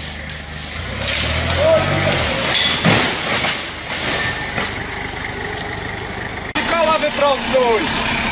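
A forklift's engine running, then stacked pallets of plastic bottles toppling and crashing to the floor, loudest in the first three seconds with a sharp impact about three seconds in. Near the end, people's raised voices.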